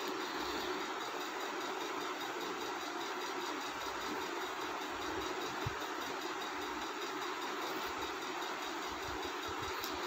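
Steady, even background noise, a constant hiss with no distinct events and no change in level.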